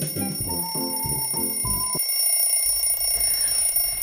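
Festive music with a bell-like melody stops abruptly about halfway through, while a steady high-pitched smartphone alarm tone keeps ringing after it.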